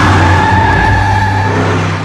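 Car tyres squealing as a car accelerates hard, over the engine's steady low running; the squeal fades out about one and a half seconds in.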